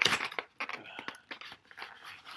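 Thin plastic miniatures tray being slid out of a cardboard box: a sharp rustle at the start, then irregular crinkling and scraping of plastic against card.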